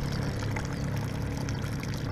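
Thin stream of water draining through a hole in the bottom of a plastic basin and trickling steadily onto dirt ground, over a steady low hum.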